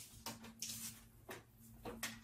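Faint rustling and a few light clicks as a corded stick vacuum's power cord is wrapped around the cord hooks on its body.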